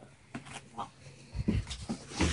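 A toddler's short, breathy vocal sounds, followed by a few soft thumps of his footsteps near the end.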